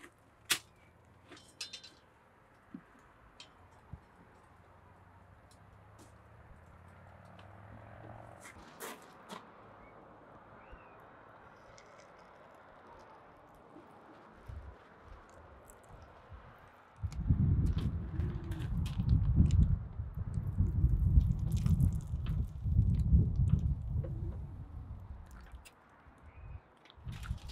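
A few faint metallic clicks and clinks as steel crucible tongs handle a hot crucible during a molten-copper pour. From about two-thirds of the way in, a loud, uneven low rumble of unclear source covers everything.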